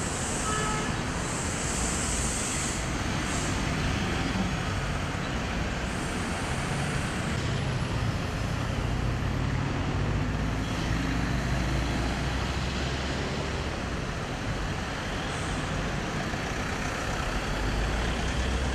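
Road traffic: cars, vans and city buses moving slowly past, their engines a steady low rumble, with a few short high hisses in the first seconds and again about six seconds in.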